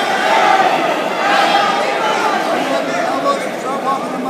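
Many overlapping voices of a crowd chattering and calling out in a large, echoing hall.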